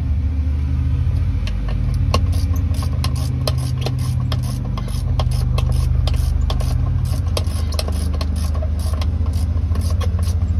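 An engine idling steadily with a low drone, overlaid by many short, irregular clicks of a hand ratchet turning a bolt on the PTO control box.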